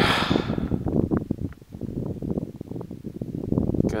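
Wind buffeting the camera microphone in a snowstorm: a low, uneven rumble with irregular gusty bumps.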